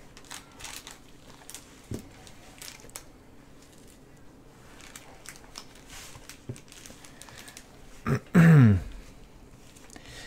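Gloved hands handling a cardboard trading-card box and its lid, with faint scattered clicks and rustles. A brief wordless voice sound, falling in pitch, comes about eight seconds in.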